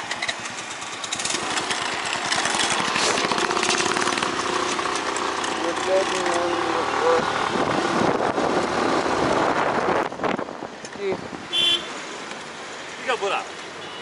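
Wind rushing over the microphone and a Suzuki scooter's engine running while riding along a road. The noise drops about ten seconds in as the ride slows to a stop, and a short high beep follows soon after.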